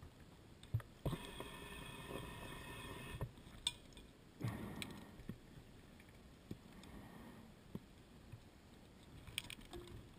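Scuba diver breathing underwater through a regulator: a hissing inhalation lasting about two seconds, then a shorter burst of exhaled bubbles. Scattered clicks and knocks from dive gear sound throughout.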